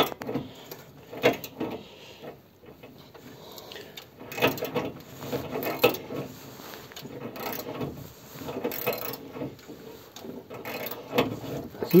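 Hillman Imp engine being turned over slowly by hand with a ratchet wrench for the first time in years: ratchet clicks and mechanical clatter in irregular spells. The engine still comes up on compression in some cylinders.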